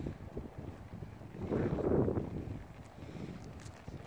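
Wind buffeting the microphone with a low, gusty rumble that swells louder about a second and a half in.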